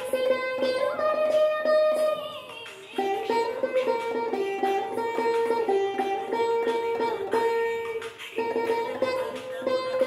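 Saraswati veena played solo: a plucked melody of ringing notes that slide and bend between pitches along the frets, with a brief lull about three seconds in.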